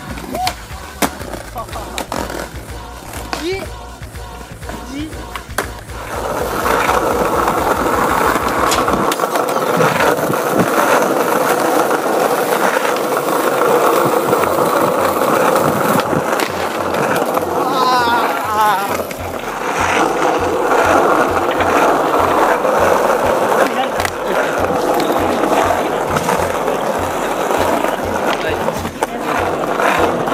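Skateboard wheels rolling over paving, a loud steady rumble setting in about six seconds in, broken by sharp clacks of boards popping and landing tricks.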